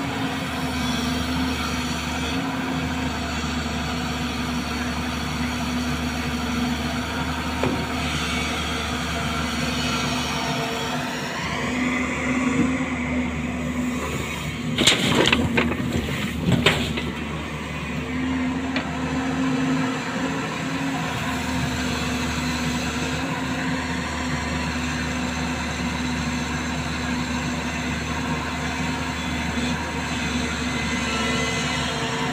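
Diesel engines of a JCB tracked excavator and a dumper running steadily. About 11 seconds in, the excavator revs with a rising whine. Between about 15 and 17 seconds, its bucket tips a load of wet sand into the steel dumper bed with a burst of thuds and rattles.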